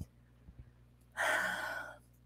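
A woman's single breathy sigh, a little over a second in and lasting under a second, with near silence around it.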